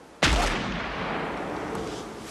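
A single rifle shot about a quarter second in, followed by a long echoing tail that dies away slowly.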